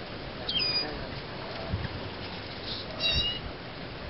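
Hummingbird calls: a sharp, high note dropping in pitch about half a second in, then a quick cluster of high chips about three seconds in.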